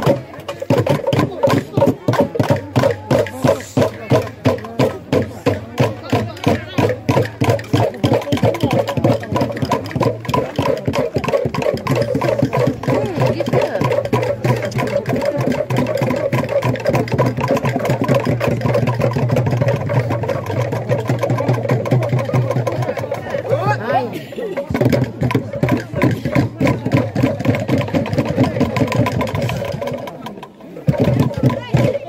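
Traditional Langoron dance music: a group of men chanting together over a steady percussive beat, with a short break about three quarters of the way in.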